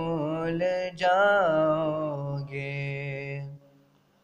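Male voice singing an Urdu devotional nasheed, drawing out and bending the final notes of a line over a low, steady drone. Both stop about three and a half seconds in, leaving near silence.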